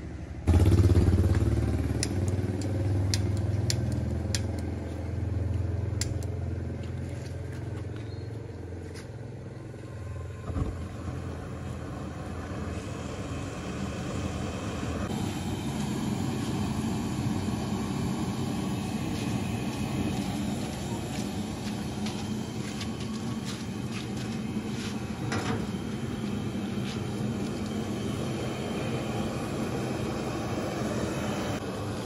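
A loud low rumble starts about half a second in and fades over the first ten seconds, with a few sharp clicks. From about fifteen seconds in, a gas burner under a large aluminium cooking pot runs with a steady roar.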